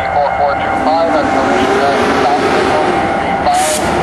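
EMD GP40-2 diesel-electric locomotive running as it moves slowly forward, with indistinct voices over it and a short hiss about three and a half seconds in.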